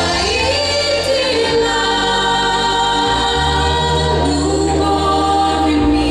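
A vocal quartet of two men and two women singing a Christian prayer song in harmony into microphones, in long held notes that glide between pitches, over low sustained bass notes that change every second or two.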